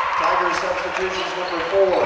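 People's voices in a school gymnasium between free throws, with talk carrying in the hall.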